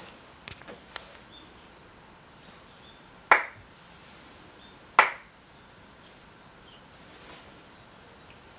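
Two sharp Shinto ritual hand claps (kashiwade) by the kneeling priest, about a second and a half apart, each ringing briefly.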